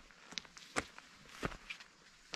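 Quiet footsteps on a loose stony gravel path, a few crunches with two stronger steps about three-quarters of a second apart.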